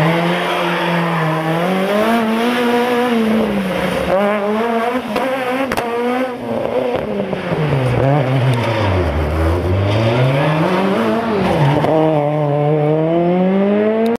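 Rally car engines revving hard, their pitch climbing and falling again and again with throttle and gear changes, with a few short sharp cracks around the middle.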